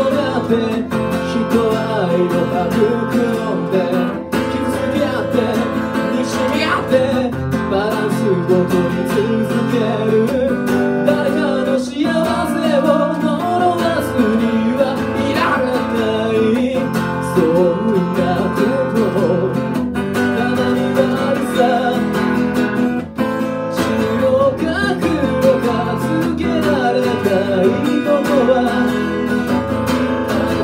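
Live solo performance: a man singing while strumming an acoustic guitar, with the music running continuously.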